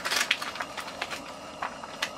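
Plastic bag of shredded cheese crinkling as a hand reaches in for a handful: a run of short, irregular crackles.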